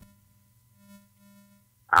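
Faint background music: a low, steady drone with a few soft, slow notes over it. A man's voice begins just before the end.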